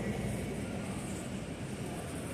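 Steady background noise of a supermarket aisle, with a shopping cart rolling along the floor near the end.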